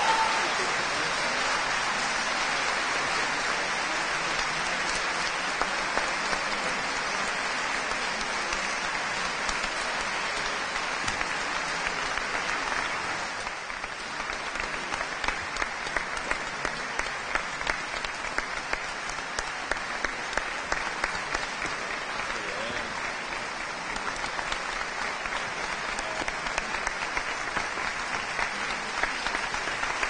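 Large audience applauding in a concert hall: a dense, steady wash of clapping that about halfway through turns into rhythmic clapping in unison, about two claps a second.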